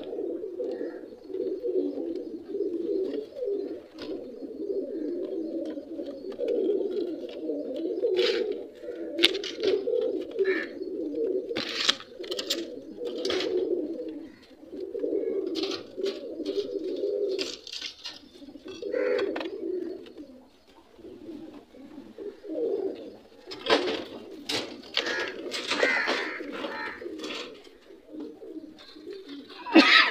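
Pigeons cooing in a near-continuous run of low phrases with short pauses, and scattered sharp clicks and rustles over the top.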